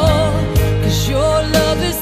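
Male vocal group singing a slow ballad over instrumental accompaniment, holding long notes with vibrato and sliding between them.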